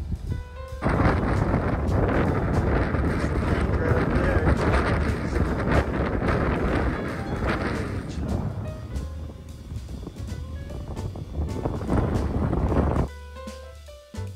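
Wind buffeting the microphone, a loud rough rushing heaviest in the low end, starting about a second in and cutting off about a second before the end. Background music with steady tones lies underneath and is plainer in the quieter last second.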